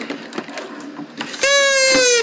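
Toy party horn blown once, about one and a half seconds in: a loud, reedy tone that sags slightly in pitch and lasts under a second.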